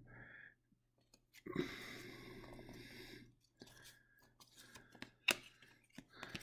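Cardboard trading cards being slid and shuffled by hand: a faint rustle of cards rubbing together for a couple of seconds, then a few light clicks as cards are flicked and set down on a wooden table.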